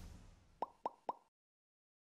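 Logo-animation sound effects: the tail of a whoosh with a low boom fades out, then three quick, short pops about a quarter second apart, each dropping in pitch.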